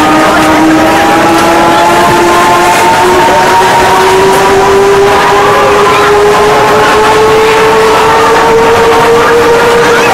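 Euro-Sat roller coaster train running along its track in the dark, a loud steady rumble with a whine that rises slowly in pitch as the train picks up speed.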